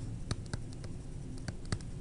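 Stylus tapping and writing on a tablet screen, making a handful of light, irregularly spaced clicks.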